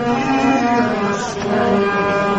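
Qawwali music: a low, long-held sung note over a harmonium drone.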